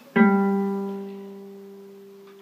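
A single A-flat note played on a gypsy jazz (Selmer-style) acoustic guitar, struck just after the start and left ringing, slowly dying away.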